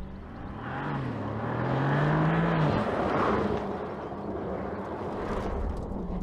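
Porsche Panamera accelerating past close by, its engine note rising and then dropping away suddenly about two and a half seconds in, with tyre and wind rush that peaks as it passes and then fades as it pulls away.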